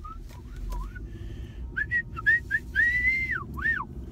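A person whistling a few short quick notes, then one long arched note and a quick rising-and-falling one, over the low steady hum of the car on the move.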